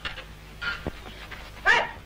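A dog barking twice: a short bark a little after half a second, then a louder one near the end.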